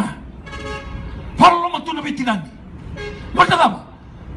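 A man preaching in two loud, shouted phrases, with a vehicle horn sounding one steady note for just under a second about half a second in.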